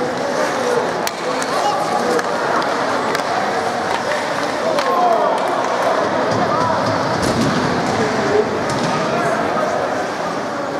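Ice hockey in play in an arena: skate blades scraping the ice and a few sharp clicks of sticks and puck, under the chatter and shouts of players and spectators.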